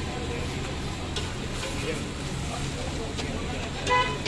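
Food sizzling on a flat iron street-stall griddle, with the scrape and clink of metal spatulas; one sharp ringing clank of a spatula on the griddle just before the end.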